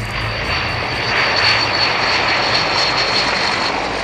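Transall C-160 turboprop engines and propellers running loud as the aircraft rolls out on the runway just after landing, with a steady high whine over the engine noise.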